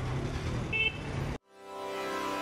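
Street traffic with the engines of auto-rickshaws and a van passing, and a brief high horn beep just under a second in. The traffic sound cuts off abruptly about 1.4 s in and electronic music fades in.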